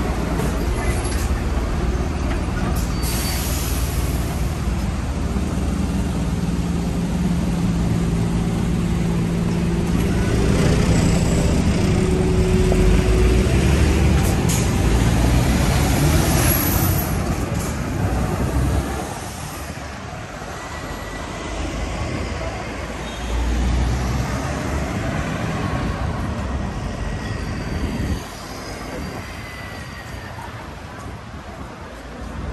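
Diesel engine of a large box lorry running close by in slow street traffic, a steady low hum that fades about two-thirds of the way through; general road traffic goes on after, with another low rumble near the end.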